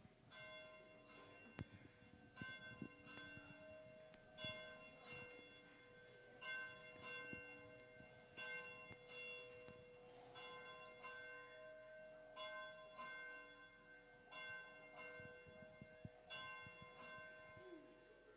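Faint church bell chimes: a slow run of struck, ringing bell notes in groups of two or three about every two seconds, with a steady faint hum underneath.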